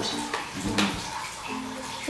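A plastic dog-treat pouch rustling as it is handled, with one sharp crinkle a little under a second in; a soft hummed voice sounds near the end.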